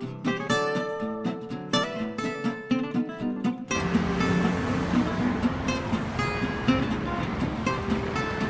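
Background music: an acoustic guitar picking a melody. A steady hiss of background noise joins under it about halfway through.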